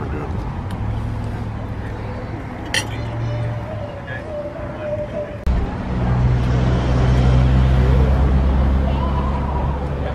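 Steady low rumble of a vehicle engine running nearby, with faint background voices. The rumble turns suddenly louder at an edit about halfway through.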